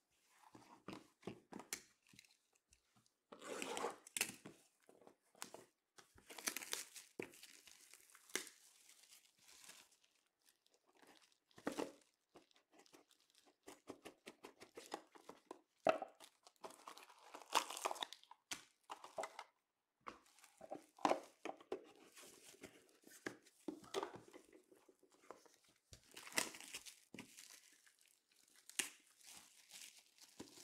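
Clear plastic shrink wrap being torn and crumpled off sealed trading-card hobby boxes, with the boxes handled and opened, in irregular rustling bursts.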